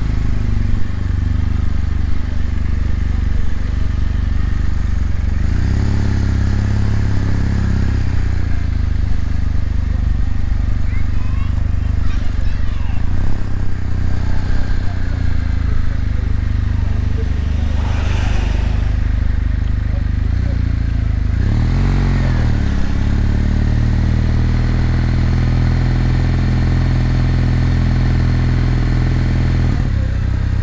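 Kawasaki W800's air-cooled parallel-twin engine running at low speed, its pitch rising and falling as it is revved and pulls away a couple of times, heard from the rider's position.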